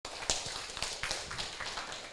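Irregular light taps and clicks, several a second, over faint room noise.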